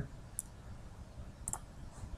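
Two faint computer mouse clicks about a second apart, over quiet room tone.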